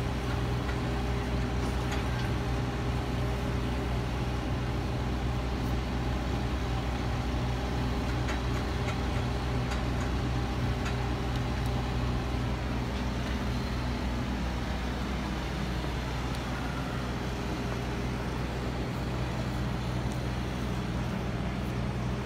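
Steady street traffic noise, with the low, even hum of a vehicle engine running.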